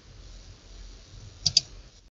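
Two quick computer-mouse clicks, close together, about one and a half seconds in, over a faint low hum.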